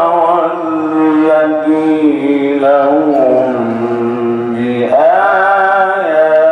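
A man reciting the Quran in melodic tajweed style, holding long drawn-out notes with wavering ornaments; the pitch sinks lower in the middle and rises again about five seconds in.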